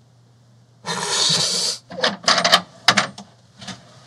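A man laughing: one long breathy burst about a second in, then a run of short choppy laugh bursts.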